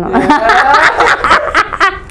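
A woman laughing, in quick breathy snickers.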